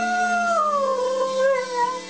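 Border collie howling along to a song: one long howl that slowly falls in pitch and breaks off near the end.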